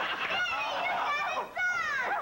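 A dog barking, played back from a tape: a run of short barks, each falling in pitch.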